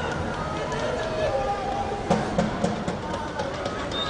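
Footballers shouting and calling to each other on the pitch, with a few sharp knocks of the ball being kicked, and no crowd noise.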